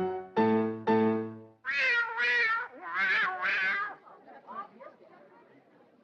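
Piano chords struck three times in quick succession, then cats meowing four times from inside the piano where they have been hidden, disturbed as the keys are played.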